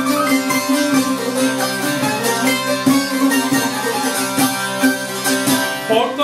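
A small cura bağlama and a larger bağlama playing a Turkish folk tune together: a busy run of quickly picked notes. This is the instrumental introduction before the singing begins.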